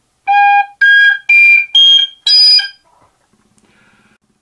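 Generation tabor pipe, a three-hole metal whistle-type pipe, played with both finger holes and the thumb hole open. Five short notes climb the overtone series, each blown harder than the one before.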